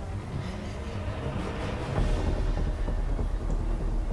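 Movie sound effect of an approaching tornado: a deep rumbling roar that grows louder about two seconds in.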